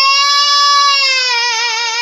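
A girl singing solo and unaccompanied, holding one long high note that she swoops up into just before it; the note stays level and then takes on a slow vibrato about a second and a half in.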